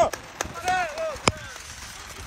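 Spectators shouting at an outdoor wrestling bout, with three sharp smacks, the loudest about a second and a quarter in.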